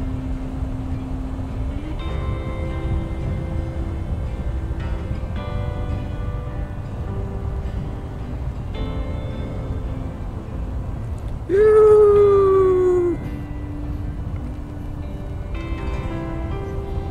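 Background music of held notes that change every second or two, over a steady low rumble from the ride. About three-quarters of the way in, the loudest sound is a strong tone that slides downward for under two seconds.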